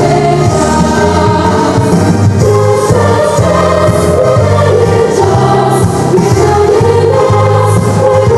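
Children's choir singing a jazz song with instrumental accompaniment, its bass line stepping from note to note about twice a second under the voices.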